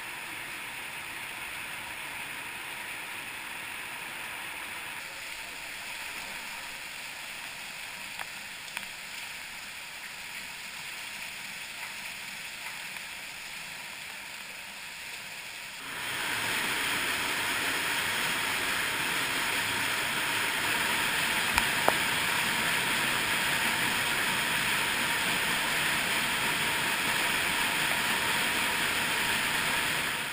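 Fast cave stream rushing over rock: a steady roar of water that jumps to a louder, fuller rush about halfway through, when a waterfall is close.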